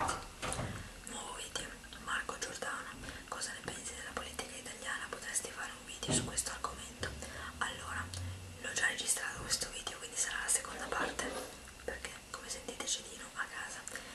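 A woman whispering close to the microphone.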